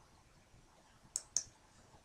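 Two quick computer mouse clicks about a second in, a fifth of a second apart, over faint room tone.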